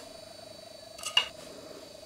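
Quiet room tone with a faint steady hum, and one short click about a second in.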